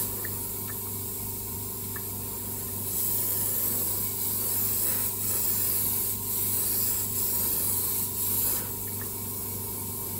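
Airbrush spraying SMS airbrush paint at full trigger along a model car body: a steady hiss of air and paint, with a steady low hum beneath. The hiss grows louder for several seconds in the middle, then eases off before the end.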